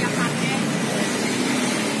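Steady street traffic noise, with faint voices over it.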